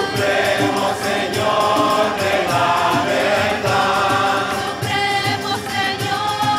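A large choir singing a devotional song together, accompanied by violin, acoustic guitar and harmonium, with hand percussion keeping a steady beat.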